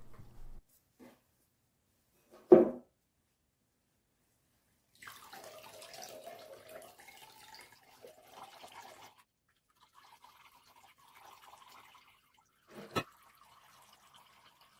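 Whey running out of a lifted cheesecloth bundle of raw-milk curds into a glass bowl: a pouring stream that starts about five seconds in and thins to a faint trickle. A short thump comes about two and a half seconds in, and a sharp click near the end.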